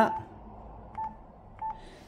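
Two short, medium-pitched key beeps from a Yaesu FT-991A transceiver, about two-thirds of a second apart. Its front-panel keys are being pressed to leave the memory-channel tag menu.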